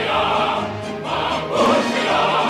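Choral music: a choir singing with instrumental accompaniment, full and continuous.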